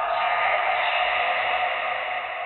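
A filtered white-noise swell in a hard techno track: a loud, steady electronic hiss with a low rumble beneath and no clear beat, beginning to fade near the end.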